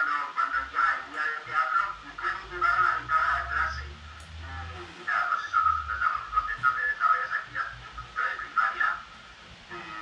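A voice coming through a computer speaker from a video call, thin and tinny, in quick syllables with short pauses.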